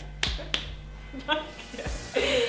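Two sharp clicks about a third of a second apart, then a brief voice sound, over a steady low hum.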